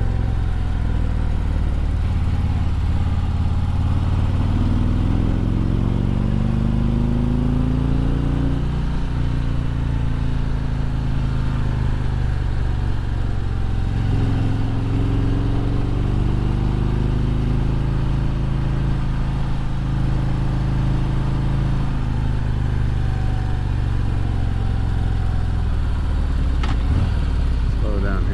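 Harley-Davidson Road Glide's V-twin engine under way on a climbing road: the revs rise for a few seconds, drop sharply about nine seconds in, climb again, hold steady, then fall away near the end as the throttle eases off.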